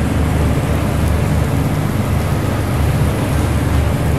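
Steady kitchen noise beside a charcoal satay grill: a loud, unsteady low rumble with a hiss over it.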